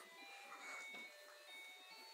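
Faint electronic tune from a baby's musical toy, thin beeping notes.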